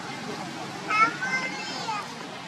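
Baby macaque giving a high, wavering cry that starts about a second in and bends up and down in pitch for about a second.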